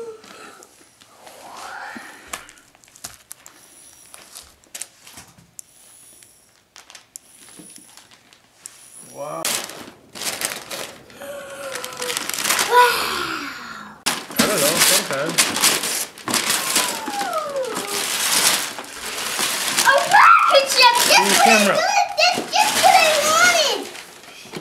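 Wrapping paper being torn and crumpled as a present is unwrapped, mostly in the second half, with excited children's voices and squeals over it.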